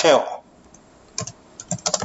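Typing on a computer keyboard: about five separate keystrokes in the second half.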